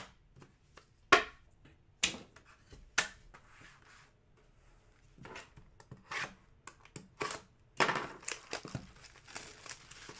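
Plastic shrink wrap on a hockey card hobby box being slit with a blade and torn off, crinkling, densest near the end. Before that, a few sharp taps a second apart as cards and the box are set down on a wooden table.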